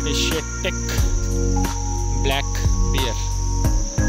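A steady, high-pitched drone of insects, with music playing underneath it.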